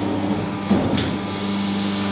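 Paper plate making machine running with a steady hum, and a short knock about three-quarters of a second in as the paper sheets are handled at the die.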